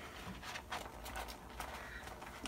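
The zipper of a vinyl cosmetic bag being tugged open, a few irregular short clicks and scratches as the pull catches and sticks.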